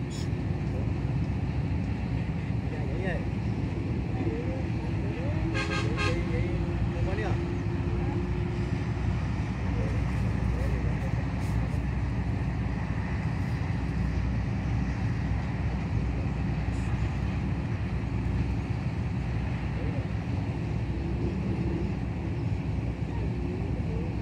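Steady low background rumble of distant traffic, with a long, held horn-like note from about four to nine seconds in.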